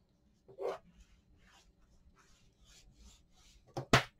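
Faint rubbing strokes as a hand presses and smooths paper onto an adhesive-edged chipboard cover. A sharp click near the end is the loudest sound.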